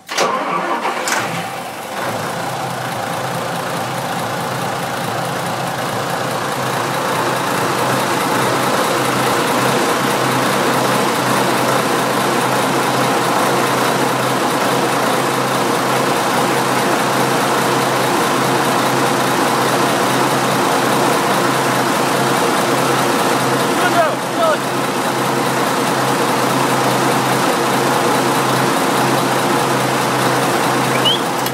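Large turbocharged inboard marine diesel engine starting up: it catches right away, runs unevenly for a second or two, then settles into a steady idle that builds over the first several seconds and holds.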